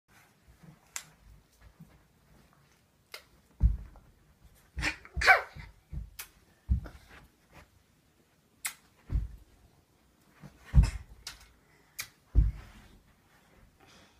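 A small child making short growling, animal-like roars in separate bursts, mixed with dull thuds.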